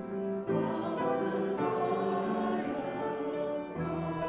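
Upright piano and a vertically held woodwind playing a slow hymn-like piece together, the woodwind holding long notes of the melody over piano chords.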